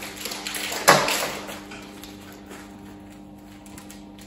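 Hands rummaging in a fabric pencil case, markers and pens rustling and clicking against each other. The noise is loudest about a second in, then thins to faint scattered clicks over a low steady hum.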